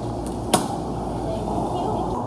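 A cardboard cake box being closed and handled on a counter, with one sharp click or tap about half a second in, over a steady murmur of voices and shop noise.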